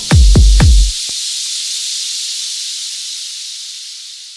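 End of an electro house track: the kick drum and bass hits stop about a second in, leaving a hissing white-noise wash that fades out.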